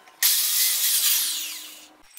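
Sliding compound miter saw starting abruptly at full speed and cutting a strip of plywood, then the blade spinning down with a falling whine as the sound fades toward the end.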